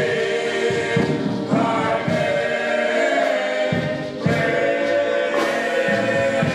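Male gospel vocal group singing in harmony, holding long chords.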